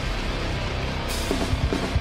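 Rock band playing an instrumental passage with no vocals: electric guitars, bass guitar and drum kit. A cymbal crash comes about a second in.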